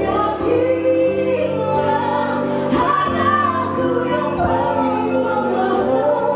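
A woman sings a slow love-song ballad with a live band playing behind her, her voice carrying held, gliding notes over the accompaniment.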